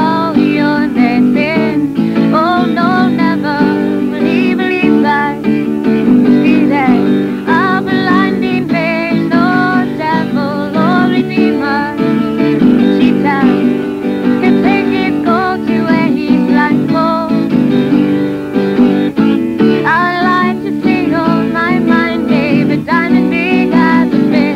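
Acoustic guitar strummed steadily as accompaniment to a woman singing a slow melody.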